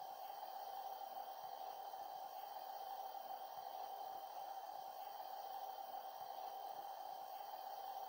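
A single steady high tone, held unbroken and faint over a light hiss.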